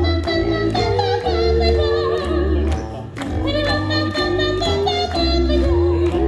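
Small mixed group of young voices singing a lively song a cappella in close harmony, several parts moving together over a deep, pulsing bass line, with a short dip about halfway.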